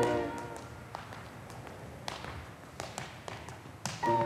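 Tap shoes striking a wooden studio floor in a few sparse, separate taps, while a piano chord fades away just at the start.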